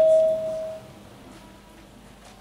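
A single electronic chime from the game board's software as a square is selected, one steady tone that fades out within the first second, followed by quiet room noise.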